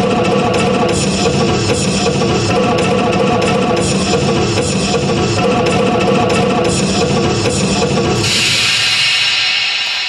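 Loud instrumental music with drums and plucked strings. About eight seconds in, the lower instruments drop away, leaving a bright hiss that fades.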